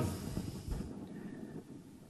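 Low, steady room noise in a lecture room during a pause in the talk, with a faint low thump about three quarters of a second in.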